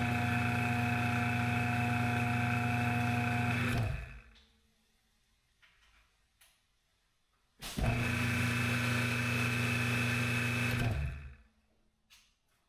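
Electric pressure washer's motor and pump running with a steady hum, twice, about four seconds and then about three seconds, stopping in between. The first run is with an open nozzle and no tip, the second with a 40-degree nozzle fitted.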